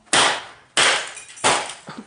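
Hammer blows on a computer circuit board lying on a concrete floor: three sharp strikes about two-thirds of a second apart.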